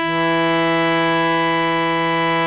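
Harmonium holding one steady reedy note, Dha (E) of raag Bhoopali's descending scale with Sa on G. The new note comes in right at the start, after a brief break from the higher Sa before it.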